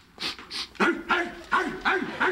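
A man imitating a dog: a few breathy huffs, then a quick run of about five short yapping barks.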